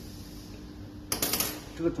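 Steel test weights of a conical connector tester clinking and knocking together as they are handled: a short cluster of metallic clicks about a second in, over quiet room tone.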